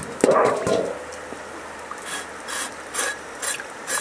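A steel cleaver scraping the skin of a slab of raw pork belly in short repeated strokes, about two to three a second, starting about halfway through. Near the start there is a louder splash of water, with flowing river water underneath.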